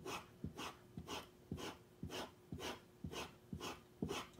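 Skew chisel being stropped on a leather strop charged with compound: a steady run of short rubbing strokes, about two a second, each starting with a light tap.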